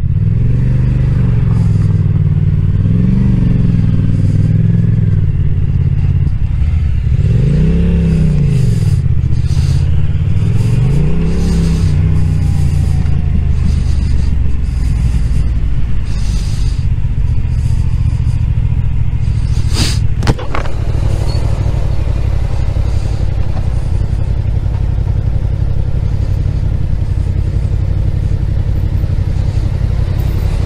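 Motorcycle engine running at low speed in slow traffic, with a steady low rumble throughout. The pitch rises and falls with the throttle three times in the first half. There is one short sharp click about twenty seconds in.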